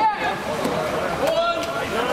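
Unclear voices of people at poolside, talking and calling out, with one rising-and-falling shout at the start, over a steady background wash.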